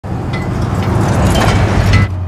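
Truck driving past at speed, a loud rumble of engine and tyres that swells toward the end and then cuts off suddenly.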